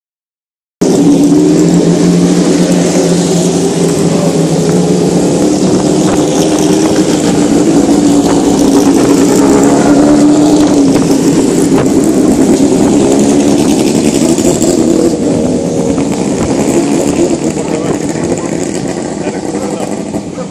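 Racing car engines running loud at close range as hill-climb cars go past the roadside one after another. The sound cuts in under a second in and fades over the last few seconds.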